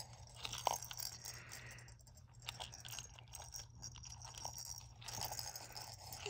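Faint, scattered small clicks and soft rattles from a baby handling a plastic froggy ball rattle toy with loose beads inside.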